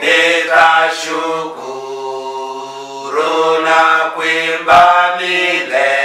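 Men's voices singing a Swahili hymn, in long held notes that change pitch every second or two.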